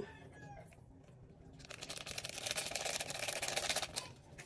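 Ariel detergent poured from a small plastic bag into a tub of powder. A steady, grainy hiss starts about a second and a half in.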